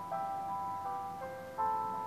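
Instrumental backing music of held, sustained chords, with no singing. The notes shift to new pitches a few times over the two seconds.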